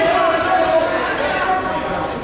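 Voices calling out and shouting in a large, echoing gym over a wrestling bout, with dull thumps underneath.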